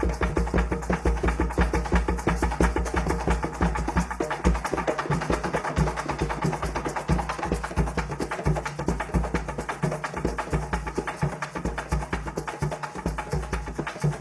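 Afro-Venezuelan San Juan Bautista drums (tambores de San Juan) playing live: an ensemble keeping up a fast, dense, driving rhythm of many overlapping strikes with a heavy bass.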